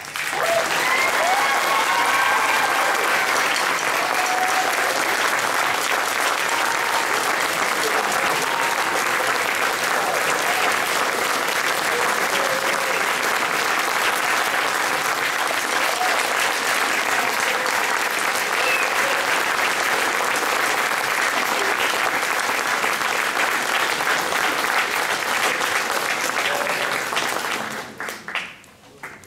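Audience applauding steadily, with some cheering voices mixed in. It starts suddenly as the band's music ends and dies away near the end.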